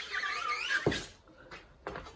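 Wooden squeegee dragged across an ink-covered silk-screen mesh, a scraping swish lasting about a second, followed by two short knocks.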